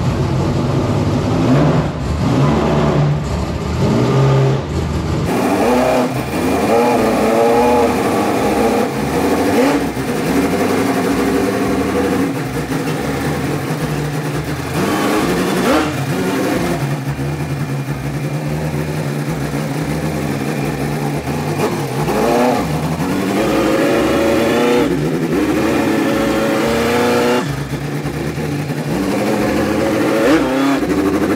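Big-block V8 of a 1978 Ford F-250 prerunner, a 575 cubic-inch engine, idling with an uneven, lumpy beat and rising and falling in pitch as it is blipped and the truck pulls out.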